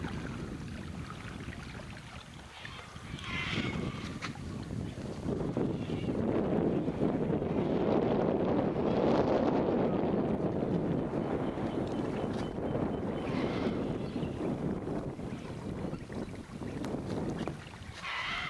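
Sulphur-crested cockatoos giving two harsh screeches, about three seconds in and again about thirteen seconds in, over a rushing noise that swells to its loudest in the middle and then eases.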